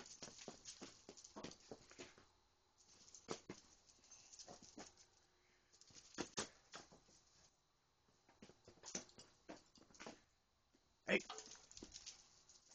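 Irregular scuffs and footfalls on concrete from a person and a young basset hound running about and chasing each other, with quiet gaps in between.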